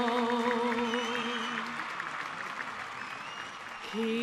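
A woman sings a long held note that fades out after about a second and a half, over audience applause. A new sung note begins right at the end.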